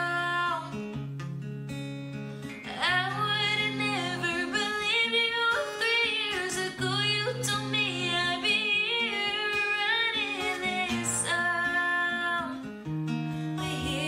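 A woman singing, with long wavering held notes, over a strummed acoustic guitar.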